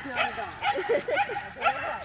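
Pembroke Welsh corgi barking in a quick run of short barks.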